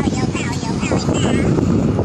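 Wind rumbling on the microphone outdoors, with a high-pitched voice heard briefly between about half a second and a second and a half in.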